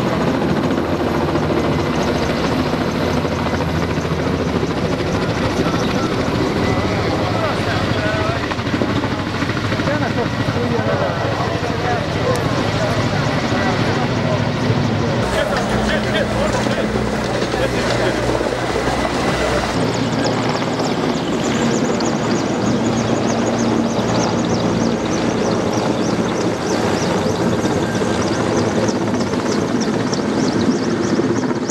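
Firefighting helicopter with a slung water bucket flying overhead, its rotor and engine running continuously, mixed with the voices of a crowd.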